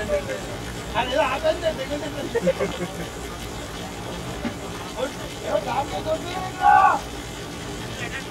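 Cricket players' voices calling out across the field in short shouts, the loudest one just before the end, over a steady low background hum.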